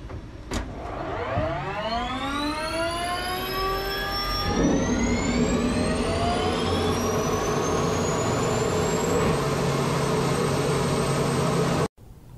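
Turbine aircraft engine starting: a click, then a whine that climbs steadily in pitch as the engine spools up, then a steady roar with the high whine held on top, which cuts off abruptly near the end.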